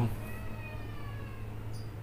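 A cat meowing faintly: one long meow that falls slowly in pitch, over a steady low electrical hum.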